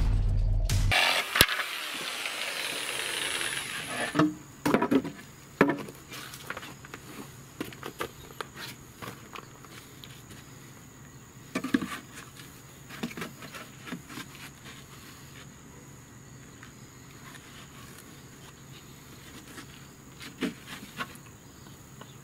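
Plywood boards being handled, giving a few short, soft knocks and clatters near 4 to 6 seconds, around 12 seconds and near 20 seconds, over quiet outdoor background with a faint steady high-pitched tone. A louder passage dies away over the first few seconds.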